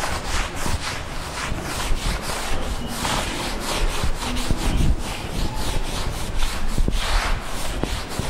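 A blackboard duster rubbed across a chalkboard in repeated back-and-forth strokes, wiping the chalk off.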